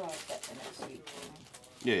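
Quiet speech: a man's voice trailing off, then low murmuring, then a short "yeah" near the end.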